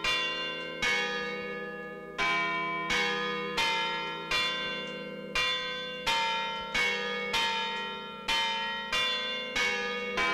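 Chiming bells playing a slow tune, a new struck note about every two-thirds of a second, each ringing on and fading before the next.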